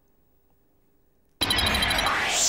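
Near silence, then about one and a half seconds in a loud, noisy, hissing transition sound effect cuts in abruptly, with a few thin high tones inside it.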